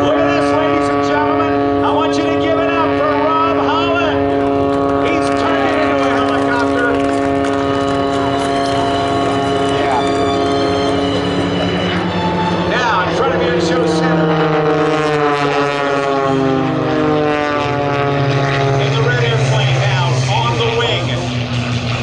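Aerobatic propeller airplane's engine and propeller droning steadily overhead, with the pitch sliding down over several seconds in the second half.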